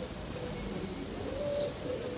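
Faint bird calls: a few short, low, steady notes with some brief high chirps.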